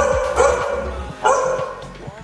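A dog barking, about three barks in the first second and a half.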